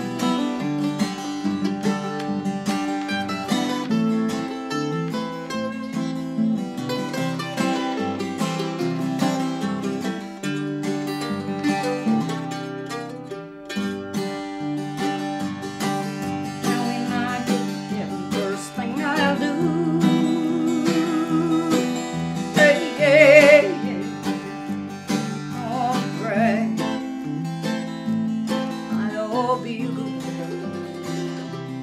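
Country music on mandolin and acoustic guitar, picked notes running through the whole stretch. From about two-thirds of the way in, a singing voice joins with long held notes and vibrato.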